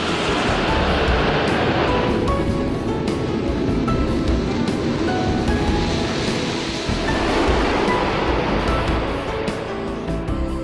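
Concorde's Olympus 593 turbojets at takeoff power with reheat: a broad roar that swells twice, in the first couple of seconds and again around the sixth second, under background music.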